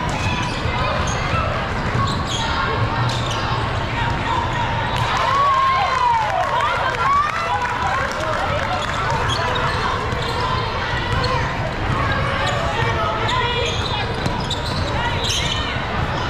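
Basketball game sounds: a ball bouncing and sneakers squeaking on a hardwood court, with several squeaks near the middle, under the shouts and chatter of players, coaches and spectators in a large hall.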